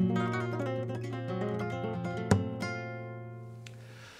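A short flamenco guitar phrase. Several notes ring together from a strong opening, a sharp strum comes a little past two seconds in, and the chord is left to ring and fade out.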